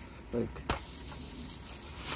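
Oat cake sizzling in a hot Ridgemonkey pan on a portable gas stove, a steady hiss, with one sharp click about two-thirds of a second in.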